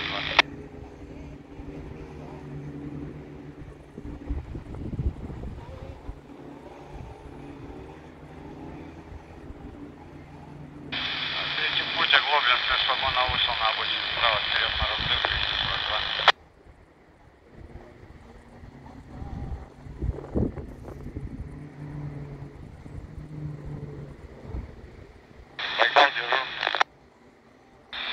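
Quansheng UV-K5(8) handheld radio receiving railway-band traffic through its small speaker: a tinny, noisy transmission plays for about five seconds midway and cuts off with a squelch click, followed by a second short burst near the end. Between the bursts there is only a low, uneven rumble.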